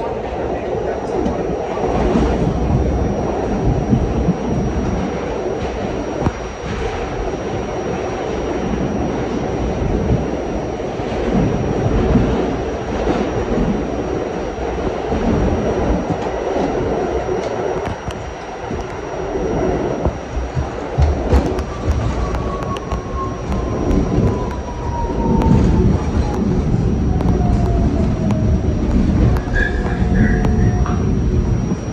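R68-series subway train running through a tunnel, a steady rumble of wheels on rail with scattered knocks. About two-thirds of the way in, a whine starts and falls steadily in pitch as the train slows into a station.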